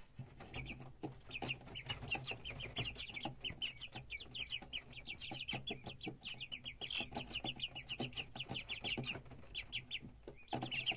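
Young Cochin chickens peeping and chirping, a dense run of short, high calls several a second from many birds at once, with a brief lull near the end. A low steady hum runs underneath.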